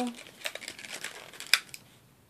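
Thin plastic clamshell of a wax melt pack crinkling and clicking as it is handled, a run of small crackles with a sharper click about one and a half seconds in.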